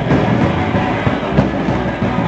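Live rock band playing loudly: a guitar strummed over a drum kit in a dense, driving passage, with one sharp drum hit about one and a half seconds in.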